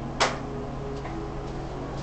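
A single sharp knock just after the start, then a much fainter tick about a second later, over a steady low hum.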